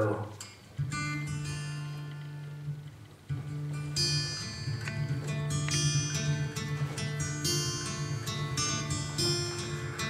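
Acoustic guitar playing the introduction to a song: a chord rings out about a second in, another about three seconds in, then steady strumming.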